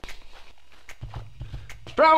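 Cartoon footstep sound effect: a run of quick, light steps, with a low hum under them from about a second in.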